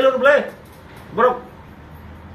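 A man speaking in short phrases: a burst of speech at the start and one short syllable a little after a second in, with pauses between.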